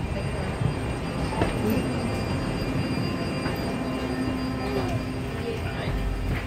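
Steady low rumble and hiss of background noise from a parked airliner's cabin and jet bridge, with a faint steady hum through the middle stretch and distant voices.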